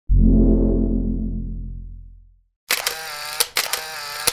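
Intro logo sound effects: a deep boom that fades away over about two seconds, then after a brief silence a bright, busy burst broken by several sharp clicks.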